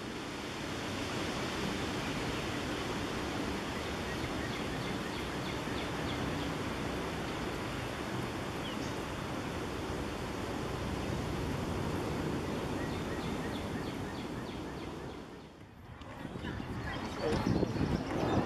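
Shallow stream water running with a steady rushing sound, with a few faint high bird chirps over it; it breaks off near the end.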